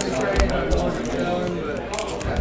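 Quiet, indistinct speech with a few short clicks and crinkles from foil trading-card packs being handled.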